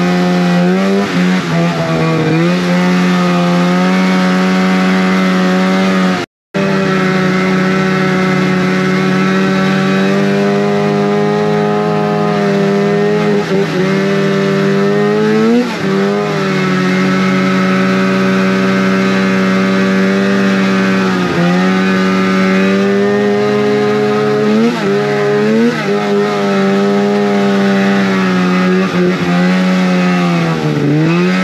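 Two-stroke snowmobile engine running at steady high revs, its pitch dipping and climbing back several times as the throttle is eased and reopened. The sound cuts out completely for a moment about six seconds in.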